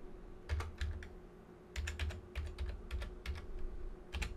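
Computer keyboard being typed on: two keystrokes, then after a short pause a quicker run of about eight more, over a faint steady hum.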